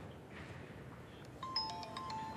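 A phone's electronic ringtone begins about one and a half seconds in: a few clear tones stepping down in pitch.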